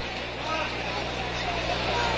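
A steady low hum under faint open-air crowd and field noise, with distant voices, between the commentary.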